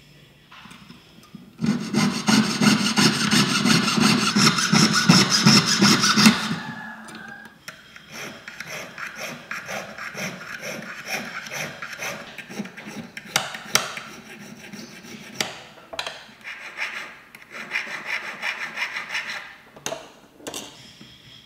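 Needle file rasping on a small 18K gold piece held against a wooden bench pin. A loud stretch of fast filing strokes runs for about five seconds, then a long run of quieter, regular strokes with a few sharper clicks.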